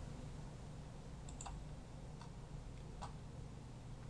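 A few faint computer mouse clicks over a low steady hiss.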